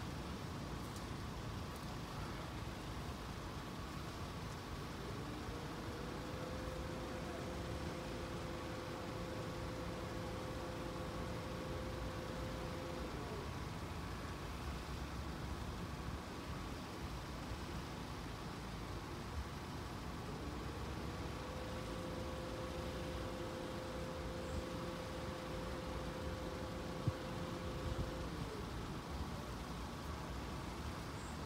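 Quiet outdoor background of road traffic held at a level crossing, a low steady noise. Twice a faint two-note hum rises in, holds for about eight seconds and falls away.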